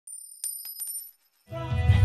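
A short, bright chime with a few quick tinkling strikes plays over the first second. After a brief silence, live band music fades in about one and a half seconds in.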